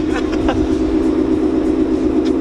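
2015 Mustang GT's V8 idling steadily while still cold.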